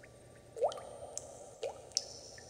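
Water dripping: two distinct drops about a second apart, each a short plink that rises quickly in pitch, with a sharp tick near the end and fainter ticks between.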